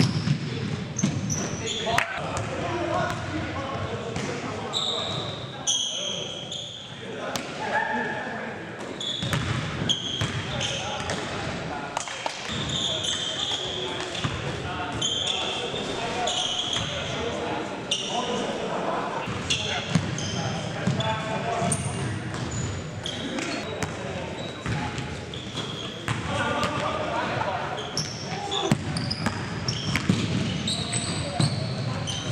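Live indoor basketball game: a ball bouncing and dribbling on a hardwood gym floor, with repeated sharp knocks, short high squeaks and players' voices echoing in a large hall.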